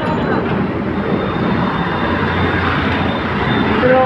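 Road traffic on a busy city street: the steady noise of vehicle engines and tyres, with a low engine drone that grows stronger midway through.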